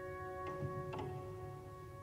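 Soft, slow piano music: held notes slowly fading away, with two faint light strikes about half a second and a second in.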